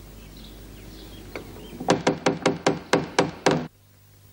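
A rapid run of about nine sharp knocks, roughly five a second, like rapping on a wooden door, starting about two seconds in and cut off abruptly.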